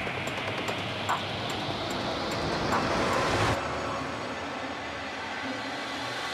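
Soundtrack whoosh effect: a rising noise sweep that builds for about three and a half seconds and cuts off suddenly, leaving a quieter hiss with the bass gone.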